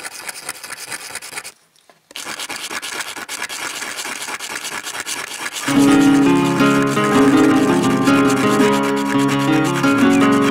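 Rapid scratching of a No. 2 pencil's graphite tip rubbed in small circles on sandpaper, grinding it into graphite powder, with a brief dropout about one and a half seconds in. About six seconds in, louder background music with plucked notes comes in and covers it.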